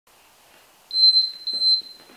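Two high electronic beeps from a workout interval timer, back to back, each about half a second long, signalling the start of the exercise interval.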